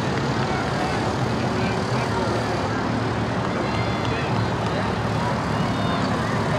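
Steady rushing background noise with faint, indistinct voices underneath.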